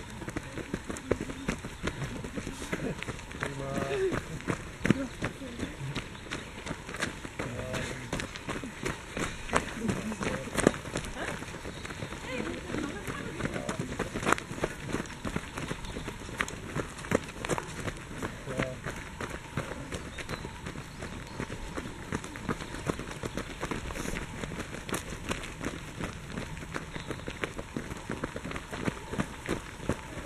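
Running footsteps on a dirt forest trail covered in dry leaves: many quick footfalls all through, with short snatches of runners' voices.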